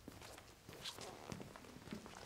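Faint, irregular footsteps of people walking across a stage floor.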